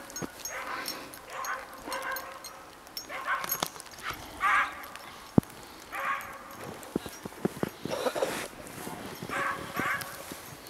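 A herding dog barking repeatedly, short calls about once a second, while working a small flock of sheep. A single sharp click about halfway through.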